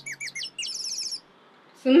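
A small bird chirping: a quick run of short, high chirps, each sliding downward, that stops about a second in. A woman's voice begins near the end.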